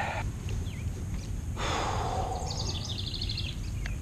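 Outdoor ambience by the water: a steady low rumble, a brief rush of noise about halfway through, and a fast high trill in the background.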